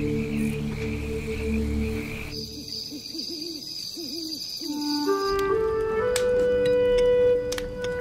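Sustained music chords, then an owl hooting several times over a high steady tone, then soft music notes stepping upward.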